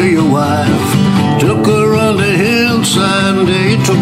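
Country-folk song: a voice singing a slow melody over acoustic guitar accompaniment.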